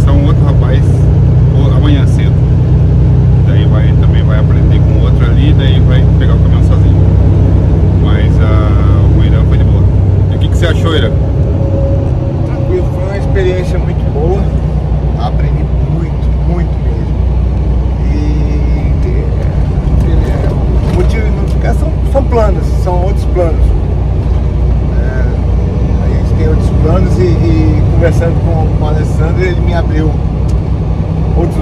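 Semi-truck's engine and road noise droning steadily inside the cab while driving on the highway, with a man talking over it.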